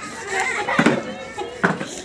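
Several people, children among them, talking and calling out over one another.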